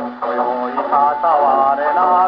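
A 1934 Victor 78 rpm shellac record playing on an acoustic gramophone. A male baritone voice comes in over orchestral accompaniment, right after a brief pause at the end of the instrumental introduction.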